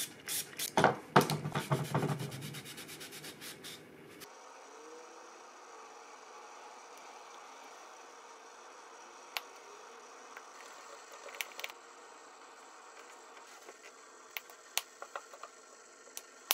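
Rubbing and scraping from hand work on a knife and its epoxy-filled handle held in a vise, ending in a quick run of small clicks about three to four seconds in. Then a faint steady hiss with a few scattered small clicks.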